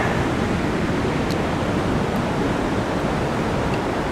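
Steady roar of heavy surf, the sea running high with typhoon swell.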